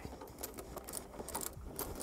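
Faint, irregular light clicks and rattles of small metal and plastic parts being handled as a finned aftermarket DRL module is fitted into a car's headlight housing.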